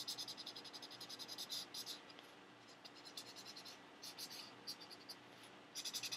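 Felt-tip marker scribbling on sketchbook paper: quick back-and-forth coloring strokes, faint and scratchy, coming in runs with a short lull a couple of seconds in and picking up again near the end.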